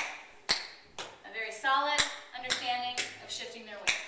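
Tap shoes striking a wooden floor in sharp, evenly spaced taps, about two a second, with a woman's voice vocalizing along between the taps.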